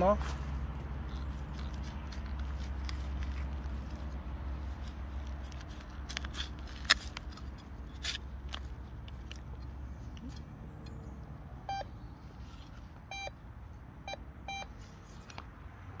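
A hand trowel digging and scraping into soil, with a few sharp clicks of the blade. Near the end a metal detector gives four short beeps, signalling metal in the dug spot.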